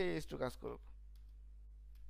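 A man's voice speaks briefly at the start, then a few faint clicks of computer keys as code is deleted in an editor, over a steady low electrical hum.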